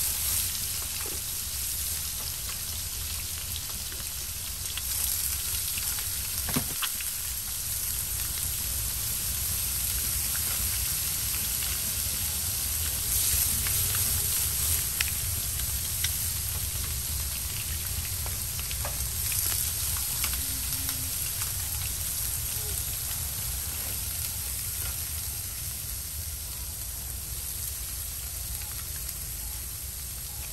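Steady sizzling hiss with scattered small crackles and clicks, as of food cooking in a clay pot on a wood-fired clay oven.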